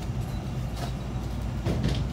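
Steady low background hum with a faint even hiss, broken by a couple of soft knocks near the middle and end.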